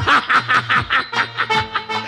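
A man laughing loudly on a theatre stage: a quick run of 'ha-ha' bursts for about a second, then a drawn-out laugh near the end, heard through the stage microphones. It is a gleeful stage laugh at a scheme that is going his way. Music plays underneath.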